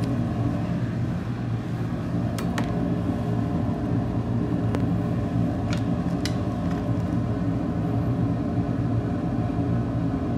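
Steady low machine hum, with a few faint light clicks from the bench as metal tweezers are handled.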